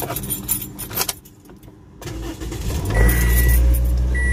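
Car keys jangling and clicking in the ignition, then the car's engine starting about two seconds in and settling into a steady low idle. A high electronic warning chime from the dashboard beeps once as the engine catches.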